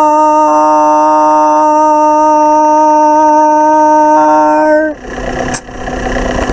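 A man's singing voice holding the song's final note, 'star', as one long, steady, loud note for about five seconds before it breaks off. After it comes quieter breathy noise with a short click.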